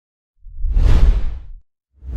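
A whoosh sound effect with a deep rumble underneath, swelling up about half a second in and fading out by about a second and a half.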